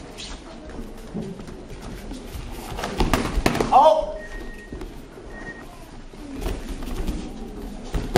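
Padded-weapon sparring in a hall: scattered knocks and thuds of foam sticks and feet on the mat over a murmuring crowd, with a cluster of hits and then a single loud falling shout just before the middle.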